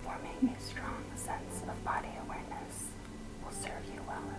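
Soft whispering over quiet spa music of long held tones, with one brief soft bump about half a second in.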